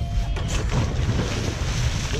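Wind buffeting the microphone over sea water splashing and rushing as a scuba diver in fins enters the water from the side of a boat.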